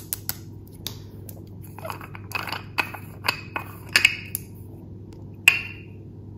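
A small glass cosmetic jar being handled and opened by hand: a string of light clicks and short scraping sounds as the lid comes off, with one sharper click near the end.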